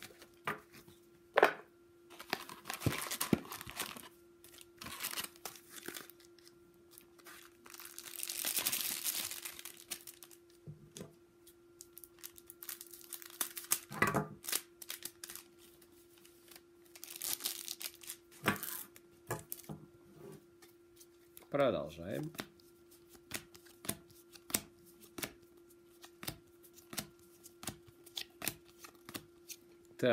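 Trading-card pack wrappers being torn open and crinkled in several rustling bursts, the longest about eight to ten seconds in, with short clicks and taps of cards being handled between them.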